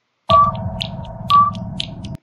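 Electronic intro sound of an online video starting to play: two sonar-like beeps about a second apart over a steady tone and low hum, with faint high ticks. It cuts off suddenly after about two seconds when the video is paused.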